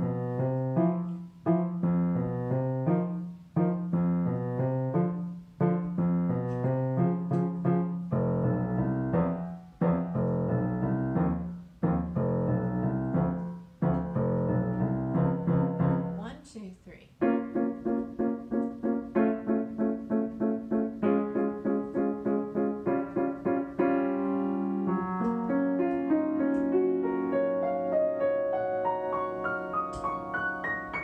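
Grand piano played in three-four time: short phrases in the low register, each ending in a brief pause about every two seconds. A little past halfway it changes to quick repeated notes, about four a second, that climb steadily higher toward the end.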